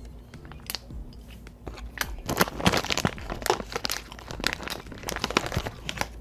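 Chewing of a caramel bar pastry. From about two seconds in, its plastic snack wrapper crinkles and crackles in the hands for several seconds.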